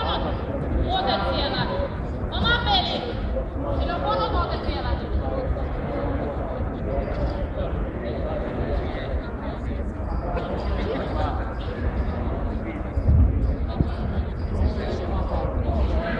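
Voices calling out in a large hall over steady background chatter and low rumble. The calling is clearest in the first few seconds. A dull thump comes late on.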